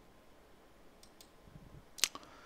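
Near silence: quiet room tone with a few faint clicks about a second in and a sharper click at the very end.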